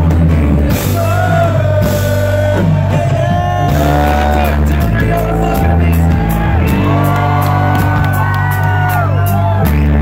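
Live reggae-rock band playing loudly through a club PA: heavy bass notes changing every second or two under drums, electric guitars and keyboards, with a bending melody line on top, heard from the audience in a large room.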